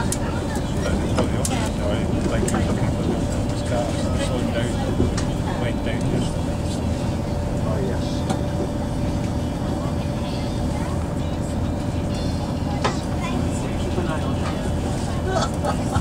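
Onboard running noise of a Class 220 Super Voyager diesel-electric train under way: a steady rumble from its underfloor Cummins diesel engine and wheels on the track. A held whine fades out about two-thirds of the way in.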